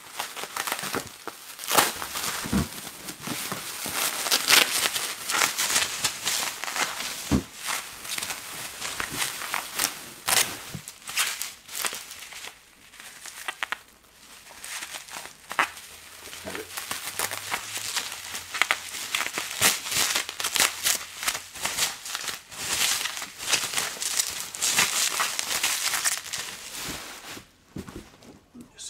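Plastic carrier bags and bubble-wrap packaging being unwrapped and handled, crinkling and rustling in a dense run of irregular crackles.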